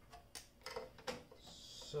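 A few faint, light clicks and taps from hands handling the circuit board and wiring inside an opened solar inverter's metal chassis.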